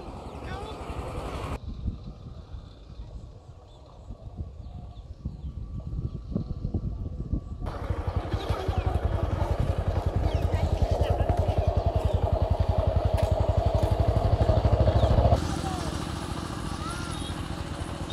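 The engine of a vehicle moving along a road, running with a fast, even pulse. It gets louder partway through and drops back suddenly near the end.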